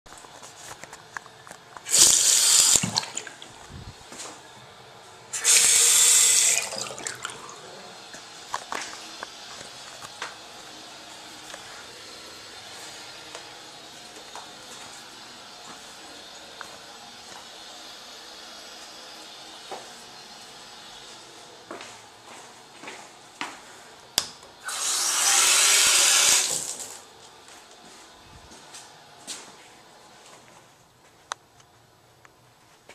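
Toilet flushing: three short surges of rushing water, two close together near the start and one more near the end, with a steady hiss of the tank refilling between them.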